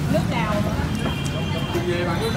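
Voices talking over a steady low hum of street traffic. A high, steady tone sounds for about a second from the middle.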